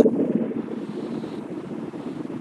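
Low, even room noise of a large hall with no distinct event: a soft hiss that fades over the first second and a half and then holds steady.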